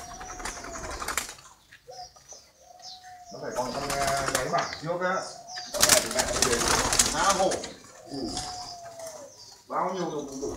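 Spotted doves cooing: short arched coo notes near the start, about two seconds in and near the end, with a louder jumble of sound in between.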